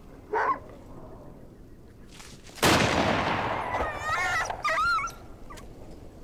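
A single old rifle shot, sudden and the loudest sound here, about two and a half seconds in, with a long echoing tail. It is followed by a dog's high, wavering yelps and whimpers: the dog has been shot. A short dog yelp comes just before, near the start.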